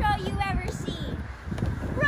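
A child's voice, with wind rumbling on the microphone.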